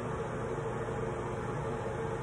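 Steady low background hiss with a faint hum: the room tone of an indoor space, with no distinct event.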